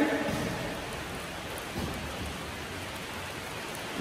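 Steady hiss of rain falling on a corrugated steel grain bin.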